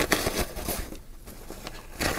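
Soft cloth drawstring pouch rustling as hands open it and feel around inside, dipping quieter about halfway through and picking up again near the end.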